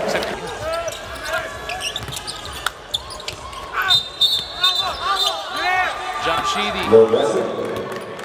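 Basketball game in play in an arena: a ball bouncing on the hardwood court, with quick sharp strikes and squeaks, and voices and crowd noise echoing in the hall.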